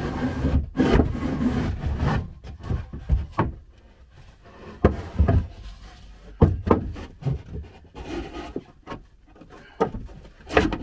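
A wooden panel being slid across a wooden cupboard floor and stood into place: wood scraping and rubbing on wood for the first couple of seconds, then a scatter of sharp knocks as it bumps against the cupboard frame.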